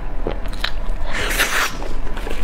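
Close-miked eating sounds of a person biting into and chewing a soft, creamy dessert roll: a few small mouth clicks, then a louder wet, hissy smacking burst about a second in that lasts about half a second.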